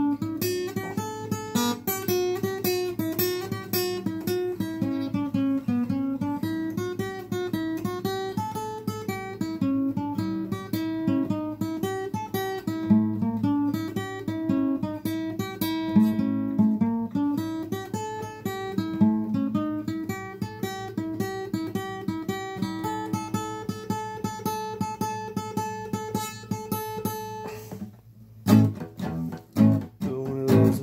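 Acoustic guitar played solo, notes picked in quick succession over a moving bass line. Near the end the playing breaks off for a moment, then resumes with a few sharp strikes.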